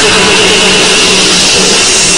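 Loud, harsh, distorted rock music with a steady low note, played back through computer speakers.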